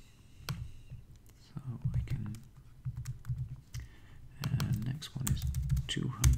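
Computer keyboard typing: separate keystroke clicks at an uneven pace with short pauses between them, as digits are entered one by one.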